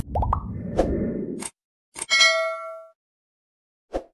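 Animated-intro sound effects. A short jingle tail fades out in the first second and a half. About two seconds in, a single bright bell-like ding rings out for about a second, and a short click comes near the end, like a subscribe button being pressed.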